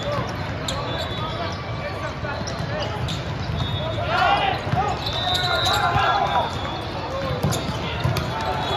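Indoor volleyball rally in a large hall: the ball struck on the serve and in play, sneakers squeaking on the sport-court floor, and players shouting calls, with a constant din of voices and balls from neighbouring courts. The shouting is loudest around the middle, as the serve is passed and the ball set.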